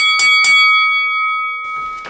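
Boxing ring bell struck three times in quick succession, then ringing on and fading out over about a second and a half.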